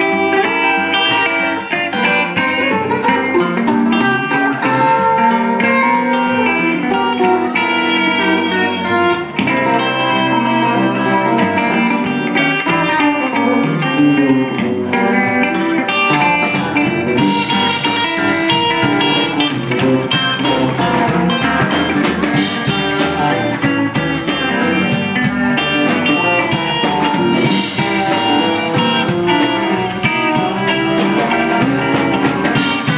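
Live electric blues band playing an instrumental passage: picked electric guitar lines over a second guitar, bass and drums. The cymbals come in stronger a little past halfway.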